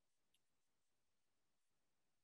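Near silence: digital silence in a video-call recording, the pause before an attendee unmutes.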